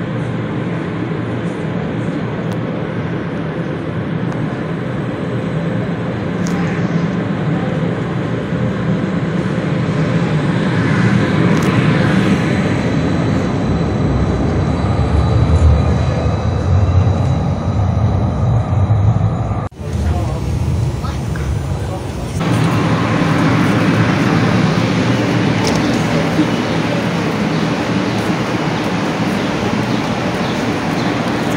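Calgary Transit CTrain light-rail train moving at a platform, a steady rumble of wheels and traction motors that grows louder to a peak in the middle. The sound breaks off abruptly about two-thirds of the way through and resumes as similar steady train and street noise.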